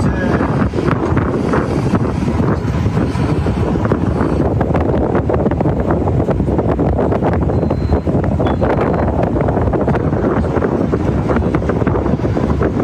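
Loud, steady wind buffeting the microphone on the open deck of a warship under way at sea, in continual gusts.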